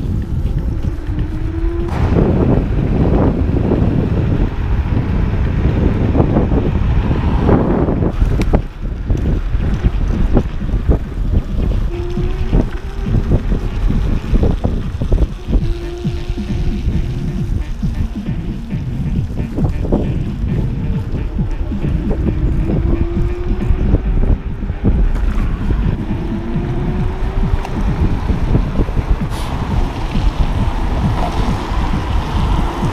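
Wind buffeting the microphone of a handlebar camera on a moving electric scooter, with steady road and tyre rumble and small knocks from the bumps. A few short rising whines sound through it, and music plays underneath.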